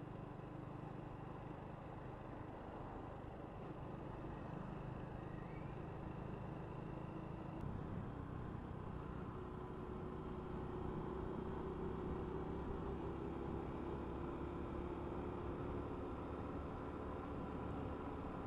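Honda Wave 125 motorcycle being ridden along a road: a steady low engine drone mixed with wind and road noise, growing a little louder and slightly higher in pitch in the second half.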